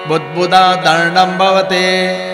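Sanskrit verses chanted in a melodic recitation, phrase by phrase, over a steady drone.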